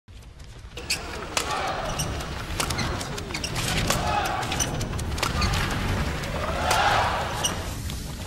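Intro sound effects: a string of sharp, irregular hits and thuds under swelling whooshes, the last and loudest about seven seconds in, as the channel logo appears.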